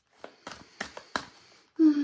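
A deck of oracle cards being shuffled by hand: a series of short, sharp card clicks and slaps, about four or five in under two seconds.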